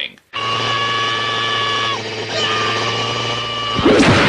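Engine of a small off-road vehicle running at a steady speed as a drone, dipping briefly about two seconds in and then holding again. A louder noisy burst comes near the end.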